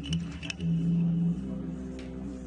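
Didgeridoo playing a steady low drone that swells louder for about the first second and a half. A few sharp knocks come within the first half second.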